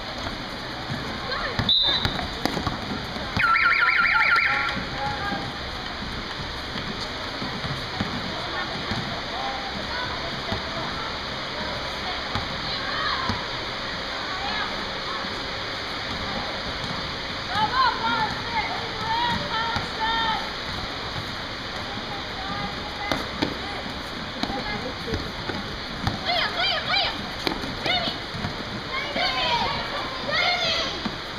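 Indoor basketball game: a sharp knock about two seconds in, then a loud buzzer sounding for about a second. After that comes a steady hubbub of voices in the hall, with sneakers squeaking on the court in short bursts later on.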